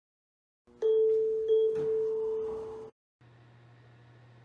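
Elevator arrival chime: a clear bell-like tone struck twice, less than a second apart, ringing on until it is cut off abruptly. A faint low steady hum follows.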